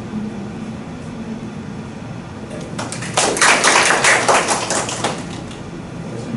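A short round of applause from a small audience in a room, many hands clapping, starting about three seconds in and dying away after two to three seconds.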